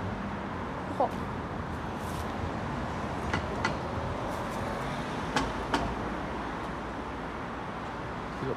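Outdoor street ambience: a steady low rumble of road traffic, with a few short sharp clicks in two pairs around the middle.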